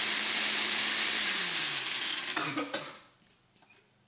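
Countertop jug blender running on a smoothie, then switched off: its motor hum falls in pitch as it winds down, and the blending noise stops about three seconds in, with a few light clatters just before.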